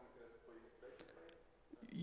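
Near silence in a lecture hall: a faint voice speaking off the microphone, with one small click about halfway through.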